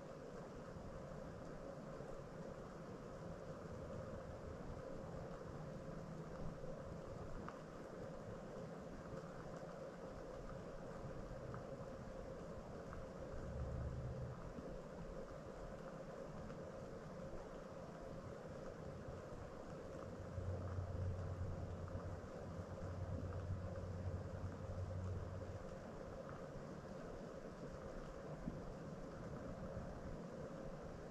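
Faint, steady background noise with a thin hum, broken by a short low rumble about halfway through and a longer one lasting several seconds later on.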